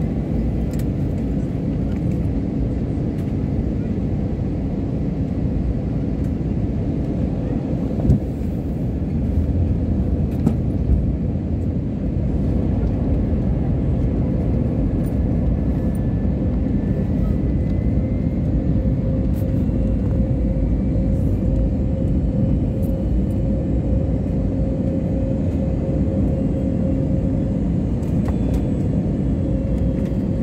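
Steady low roar of cabin noise inside a jet airliner during its descent to land, with a steady hum running through it. A single short knock sounds about eight seconds in.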